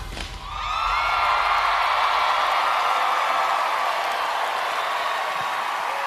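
A large studio audience cheering and applauding, with screams and whoops, swelling in about half a second as the music stops and holding steady after.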